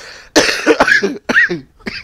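A man laughing hard, breaking into coughs, in several short bursts with a high squeal about a second and a half in.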